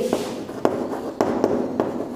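Chalk writing on a blackboard: a light scratching, with three sharp taps as the chalk strikes the board.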